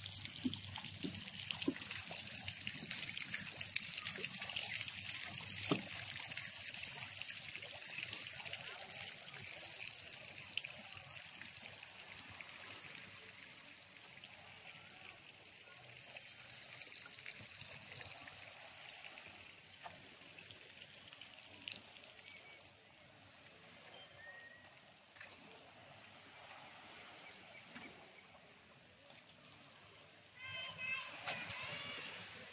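Water trickling steadily, louder at first and gradually fading over the second half.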